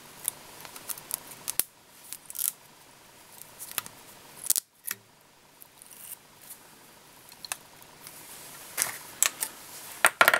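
Light, irregular clicks and ticks of a whip finish tool and tying thread being worked at a fly-tying vise, tying off the thread at the head of the fly.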